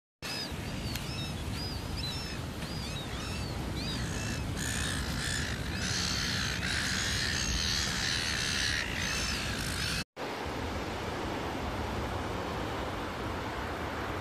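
A flock of gulls calling: repeated rising-and-falling cries that thicken into a dense, overlapping chorus about a third of the way in, over a steady low rush of outdoor noise. After a sudden cut about two-thirds of the way through, the calls stop and only the low rush remains.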